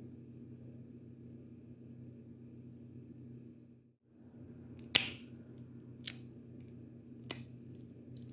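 Three sharp snips of a dog nail clipper cutting nail, about a second apart, the first the loudest, after a faint steady room hum that cuts out briefly.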